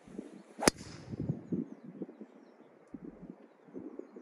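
TaylorMade Stealth driver striking a golf ball off the tee: one sharp crack under a second in.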